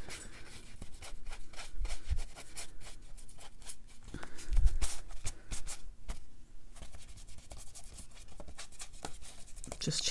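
A stiff paintbrush scrubbing damp watercolor paper in quick short strokes to lift the paint, with a crumpled paper towel dabbing the paper. There is a dull bump about halfway through.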